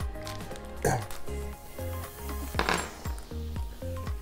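Background music, with short metallic clinks of metal Z-clip tabletop fasteners being handled: one about a second in and another nearly two seconds later.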